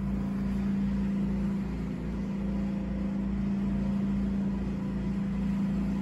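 Steady low machine hum with a low throb repeating about twice a second, from equipment running in the lab room.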